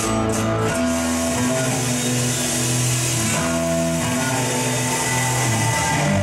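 Live band music: acoustic guitar strumming over held electronic tones and low bass notes that change every second or so, with no singing.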